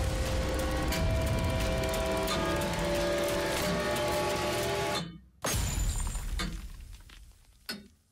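Trailer soundtrack: a loud, dense swell of music and effects with held dissonant tones that cuts off abruptly about five seconds in, followed by a single heavy hit that rings out and fades over about two seconds.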